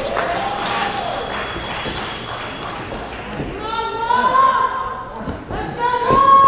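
A person yelling: one long shout held at a steady pitch for over a second, starting a little past halfway, and another starting right at the end.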